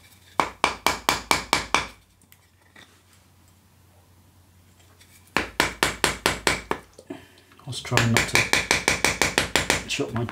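Knife working out a hole in a piece of green wood: quick runs of light, slightly ringing taps, about six a second. There are three bursts, the last one, near the end, faster and longer.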